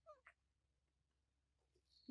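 Near silence, with two faint, short calls falling in pitch right at the start.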